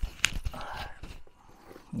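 A pocketknife handled at a cardboard box: two sharp clicks near the start, then a short scrape and quieter handling noise.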